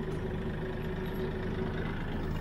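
Kioti CK4010hst compact tractor's diesel engine running steadily at an even pitch, with the PTO engaged driving a 12-foot flex-wing rotary cutter behind it.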